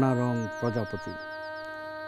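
Soft instrumental background music of steady held drone notes. In the first half comes a quick run of about nine short, high, falling chirps. A spoken word trails off at the start.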